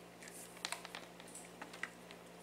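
Faint small clicks and light rustling of multimeter test leads and probes being handled on a workbench, several irregular ticks over a low steady hum.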